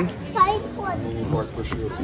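Children's voices chattering and calling out.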